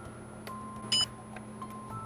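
A single short electronic beep about a second in, from the cash register as an order is keyed in, over a faint steady hum.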